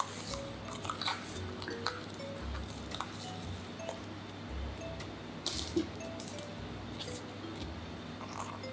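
Light background music of short plinked notes, over scattered sharp clicks and taps of a cleaver against a plastic cutting board as a red bell pepper is cut and pulled apart by hand.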